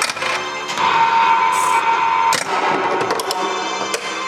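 Heighway Alien pinball machine playing its music and sound effects through its speakers, with a held high tone for about a second and a half and a few sharp hits.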